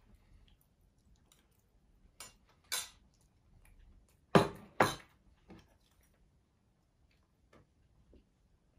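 A metal spoon clinking and scraping against a plate in a few scattered sharp clicks, the loudest two about four and a half seconds in, half a second apart.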